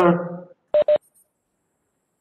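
Two short electronic beeps in quick succession, each a steady tone, just under a second in.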